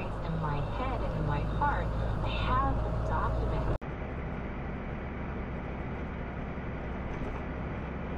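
Steady engine and road noise heard inside a semi-truck cab, with indistinct voice-like sounds over it at first. About four seconds in, the sound cuts off abruptly to a second truck cab's steady low engine and road hum.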